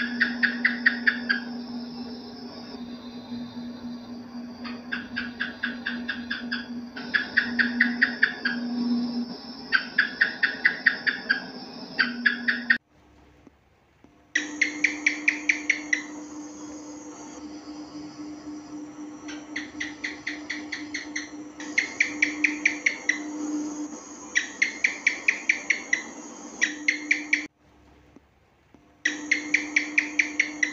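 House gecko (cicak) chirps, a sound-effect track: bursts of rapid clicking chirps repeated every few seconds over a steady low hum. The track cuts out briefly twice, where the loop restarts.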